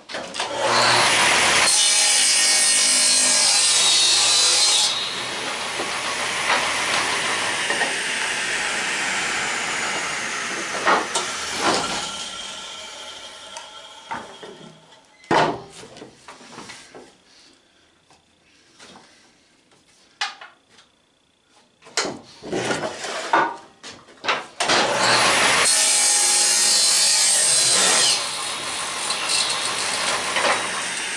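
Table saw ripping a pine 2x8 lengthwise. The blade cuts through the board for a few seconds, then its whine falls as it spins down, with knocks of the wood being handled. A second rip cut comes near the end.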